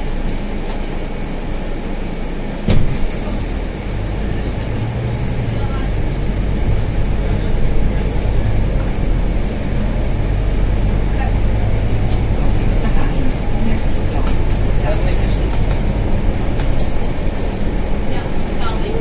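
Inside the cab of a Scania N320 city bus on the move: steady engine and road noise, the engine's low hum growing stronger after about four seconds. A single loud knock about three seconds in, with small rattles and clicks.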